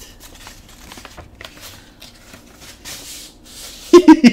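Soft rustling and sliding of paper as the contents are drawn out of a manila envelope: scattered light scrapes, then a longer rustle about three seconds in.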